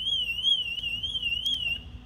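Car alarm sounding: a high warbling tone that wavers up and down about four times a second, then cuts off shortly before the end.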